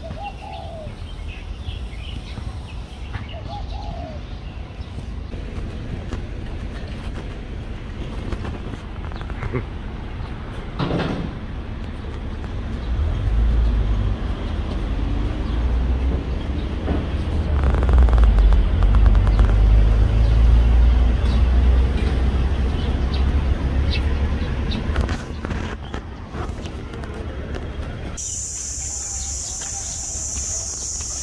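Outdoor ambience with a few short bird calls near the start. A loud low rumble swells through the middle and fades, and a steady high hiss begins near the end.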